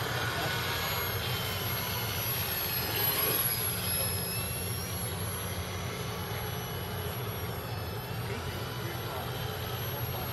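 Small electric RC model aircraft's motor and propeller whining, the pitch gliding up and down as the throttle changes, over a steady low hum.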